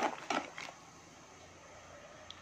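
Pot of liquid at a rolling boil: a few short pops or clicks in the first moment, then a faint steady bubbling hiss.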